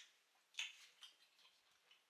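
Near silence with a few faint, short clicks, the clearest about half a second and a second in: mouth sounds of someone chewing a juicy sausage.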